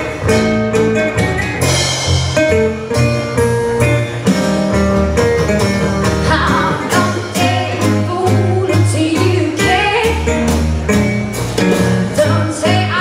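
Live blues band playing: electric guitar, upright double bass and drums with cymbals. A woman's singing voice comes in about halfway through.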